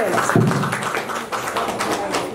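A small group clapping, a dense run of hand claps in a small room.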